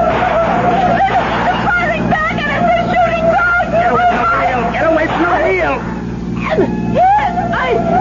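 Radio-drama car sound effects: a steady held tone sounds throughout over a running engine, with overlapping voices.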